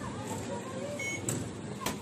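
Train station fare gate: a short electronic beep about a second in as the card reader registers a card, then a couple of sharp clicks from the gate, over the murmur of a busy station concourse.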